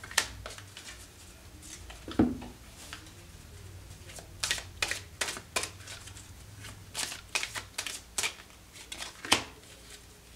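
Tarot cards being shuffled by hand: irregular crisp snaps and clicks of the cards, bunched in runs, with a duller knock about two seconds in.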